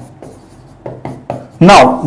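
Pen writing on a board: a few short, faint scratchy strokes, then a man's voice starts talking near the end.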